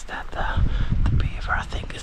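A man whispering close to the microphone, over a low rumble of wind and handling on the microphone.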